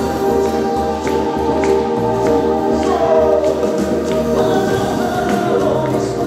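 Live band music in an Andean folk style: wooden flutes carrying a melody with singing voices, over a steady bass line that changes note every second or so.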